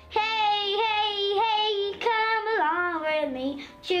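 A young boy singing alone: a few long held notes, then a line that slides down in pitch about three seconds in.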